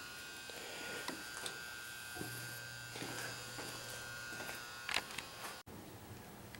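A steady electrical buzz with a few faint clicks and knocks; a low hum joins it for a couple of seconds in the middle.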